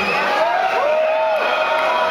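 Concert crowd cheering between songs, with one long held shout or whoop rising in about half a second in and lasting about a second.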